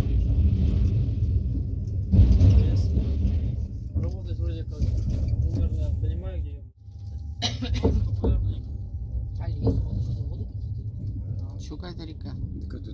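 Passenger train running, with a steady low rumble of wheels on the rails and people's voices over it; a few sharp clicks come just after the middle.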